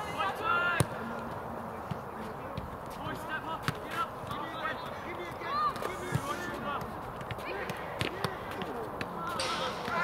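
A football being kicked, sharp thuds a few times several seconds apart, amid distant shouts of players and coaches. The shouting grows louder near the end.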